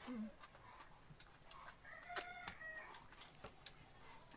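A rooster crowing faintly in the background, one call about a second long near the middle, with scattered light clicks around it.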